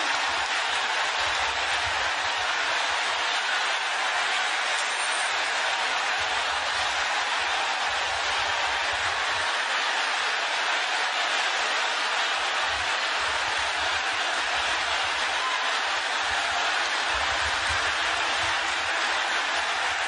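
A congregation clapping together in steady, unbroken applause.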